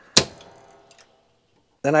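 A home panel's 200-amp main breaker is switched off with one sharp click, cutting power to the house. A faint hum dies away over the next second.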